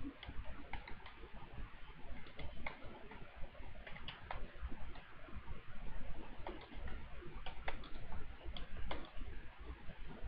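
Faint, irregular clicks of a computer keyboard being typed on, a few keystrokes a second with short pauses, over a low steady background hum.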